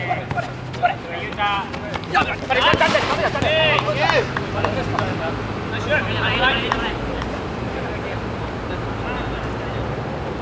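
Futsal players shouting short calls to one another across an outdoor court, with a few sharp knocks of the ball being kicked. A steady low hum runs underneath.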